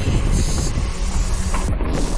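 Riding noise of a mountain bike descending a dirt singletrack: tyres rolling over packed dirt and the bike rattling over bumps, with wind rushing over the camera microphone. A steady, rumbling noise throughout.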